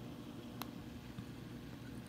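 Faint, steady hum and hiss of an aquarium protein skimmer running, with the tank's return flow switched off; a single faint click about half a second in.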